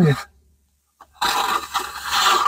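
Plastering trowel rasping and scraping stucco across a concrete-block wall, starting about a second in after a brief silence.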